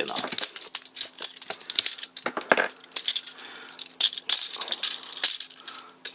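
Plastic parts of a chrome-plated Takara Tomy Drive Head transforming robot toy clicking and clacking as they are handled and moved, a string of small irregular clicks in clusters.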